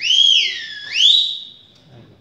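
A person whistling loud and shrill in approval as a dance number ends: one gliding whistle that rises, dips, then swoops up to a held high note lasting a little over half a second before fading out, about a second and a half in all.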